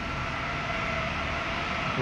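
Steady mechanical hum and hiss with a faint, even high whine.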